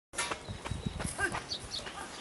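Open-air ballpark ambience: distant voices calling out, with a few scattered clicks and knocks and short high chirps.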